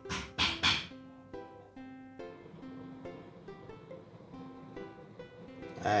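Background music on a strummed, plucked acoustic string instrument: quick even strums for about the first second, then single picked notes.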